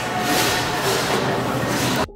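Shopping cart rolling and rattling over a supermarket floor amid the store's busy noise, a loud even clatter that cuts off suddenly at the end.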